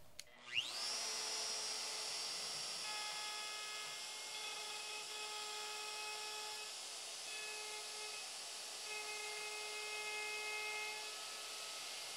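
Shaper Origin handheld CNC router's spindle spinning up with a quickly rising whine, then running steadily as it cuts a quarter-inch-deep pass in poplar. From about three seconds in, a set of steady tones joins it, breaks off briefly twice, and stops shortly before the end.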